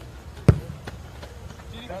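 A football kicked hard by a player on a grass pitch: one sharp thud about half a second in, followed by a fainter knock.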